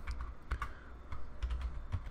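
Computer keyboard typing: a run of irregular keystroke clicks.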